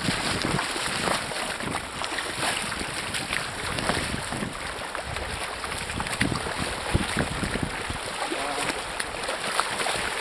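Fast river current running over a shallow riffle: a steady rushing hiss of moving water.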